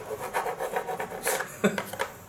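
Hand file rasping the edge of a freshly cut hole in a plastic scooter body panel in short, quick back-and-forth strokes, deburring it.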